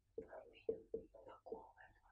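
Faint speech: a woman talking quietly under her breath, almost a whisper, in short murmured syllables.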